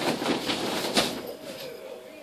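Fabric of a large pop-up photo tent rustling and flapping as its twisted metal hoop is turned back by hand. There is a sharp snap about a second in as the frame springs back into shape.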